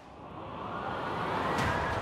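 Rising whoosh sound effect that swells in pitch and loudness for about a second and a half, leading into background music with sustained notes near the end.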